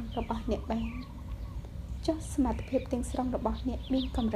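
A woman speaking in Khmer, reading aloud in short phrases with a pause of about a second in the middle, over a steady low hum.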